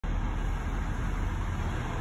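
Steady low rumble with a faint hiss: outdoor background noise with no distinct events.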